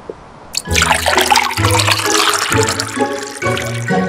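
Music starts about a second in, under a loud liquid splash: iced tea being poured from a pitcher into glasses of ice.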